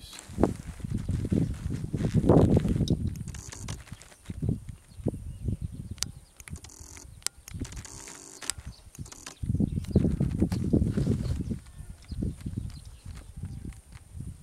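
Irregular low rumbling swells with a few sharp clicks midway, typical of wind buffeting and handling noise on a camera's built-in microphone.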